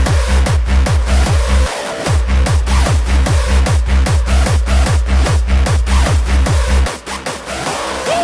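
Hardstyle dance music: a heavy kick drum on every beat, about two and a half a second, each kick falling in pitch. The kick drops out briefly about two seconds in and again for the last second.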